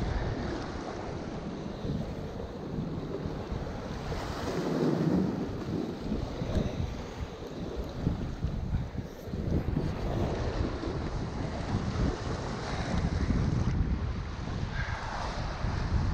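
Surf washing and breaking against the rocks below, with gusty wind buffeting the microphone; the surf swells up a few times.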